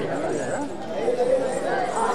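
Several voices talking over one another in a steady murmur of chatter.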